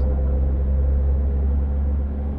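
Suzuki Cappuccino's 657cc three-cylinder engine running at steady revs while the car drives along, with a steady low hum and light road noise heard from the open cockpit.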